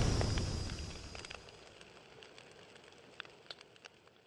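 Tail of an explosion sound effect from a fiery logo animation: a rumbling boom dying away over about a second and a half, then a few faint crackles like sparks.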